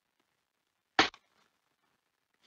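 A single short, sharp pop about a second in, with a faint tick just after it; otherwise near silence.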